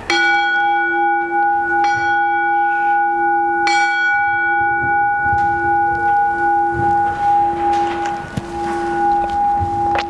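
Altar bell struck three times, about two seconds apart, at the elevation of the host during the consecration at Mass. Each strike renews one long, steady ringing tone that carries on for several seconds.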